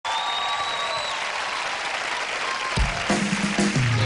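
Studio audience applauding and cheering, then about three-quarters of the way through the song's instrumental intro comes in with steady low notes.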